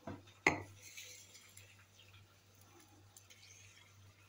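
Glassware clinking: a drinking glass knocks against glass jars, with a light click at the start and a sharp ringing clink about half a second in, then faint handling sounds.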